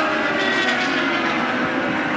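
IndyCar race car's Honda V8 engine running at high revs, its steady note falling slowly in pitch.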